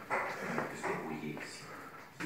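Golden retriever whining in a few short, pitched cries.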